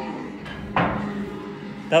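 Pool break shot: a sudden crack as the cue ball hits the rack, then the balls clattering and fading out over about a second. It is a bad break that leaves the balls bunched.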